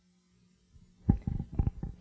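Near silence, then about a second of irregular low rumbling bumps of handling noise on a handheld microphone held close to the mouth, starting a little under a second in.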